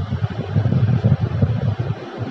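Low, uneven rumble of air buffeting the microphone, heard in a gap between sentences.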